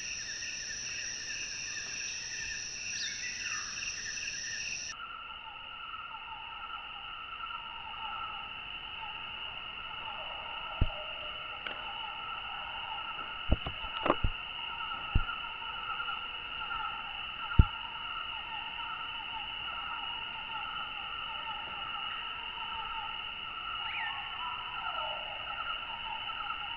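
A steady, high, pulsing chorus of insects, changing pitch abruptly about five seconds in. A handful of sharp clicks come between about eleven and eighteen seconds in.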